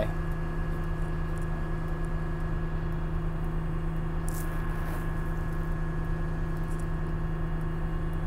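Cat RM400 reclaimer/stabilizer's diesel engine running steadily at working speed with the rotor engaged, heard from inside the cab as an even drone. The rotor display reads 108 rpm, the first rotor speed, which goes with about 1600 engine RPM.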